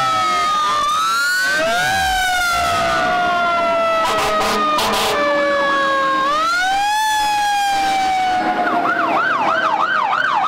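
Several fire engine sirens wailing at once, their pitches sliding up and down against each other, with a few short horn blasts about four seconds in. Near the end a siren switches to a fast yelp, about three rises and falls a second.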